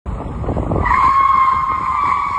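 A low vehicle rumble, then from about a second in a steady high-pitched tyre squeal, the screech of a vehicle skidding.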